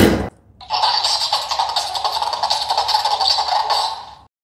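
A plush mimicking dancing-cactus toy repeats a beatboxing phrase back through its small, tinny speaker. It starts about half a second in, after a brief silence, and stops near the end.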